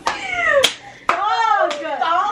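A woman's loud, drawn-out vocal cries that sweep in pitch: a falling wail, then after a short gap a longer call that rises and falls.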